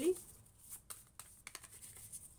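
Oracle cards being overhand-shuffled by hand: a few soft, irregular card slaps and rustles as the cards drop from one hand onto the other.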